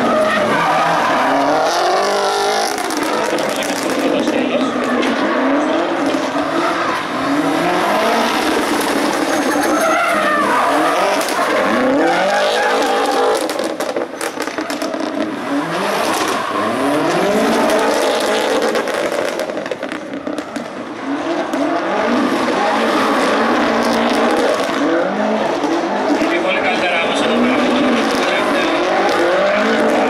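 Subaru Impreza's flat-four engine revving hard, rising and falling again and again, with tires squealing and skidding as the car is driven sideways through a timed course, with brief lulls about a third and two thirds of the way through.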